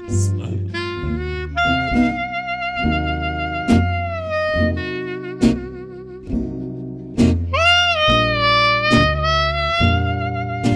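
Jazz clarinet playing smooth, long held notes with vibrato over plucked upright bass and acoustic guitar. A new high note swells in about seven and a half seconds in and is held.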